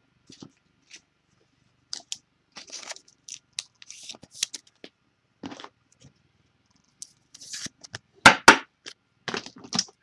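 Handling noise of a trading card and cardboard hobby boxes on a table: scattered light rustles and clicks, with two sharp knocks a little past the eight-second mark as a box is taken from the stack.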